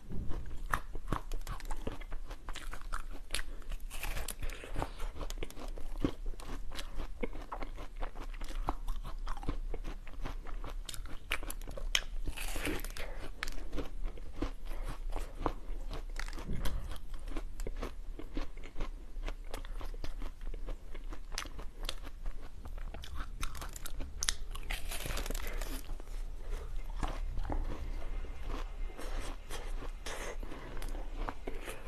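Close-miked biting and chewing of a crunchy, pineapple-shaped treat: a dense, irregular run of crisp crunches all the way through.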